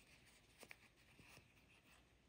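Near silence: faint soft rustling of hands handling a crocheted yarn piece and its loose tails, with a few faint ticks in the middle.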